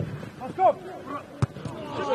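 Players shouting on a football pitch, then one sharp thud about one and a half seconds in: a boot striking the ball as the corner kick is taken.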